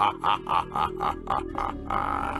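A man's drawn-out, sinister laugh in quick, even pulses, about five a second, over background music. The laugh stops shortly before the end.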